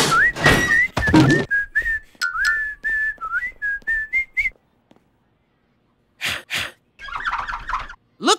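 A person whistling a jaunty, wavering tune over steady thumping footsteps. The whistle stops about four and a half seconds in, and a few short, noisy sound effects follow near the end.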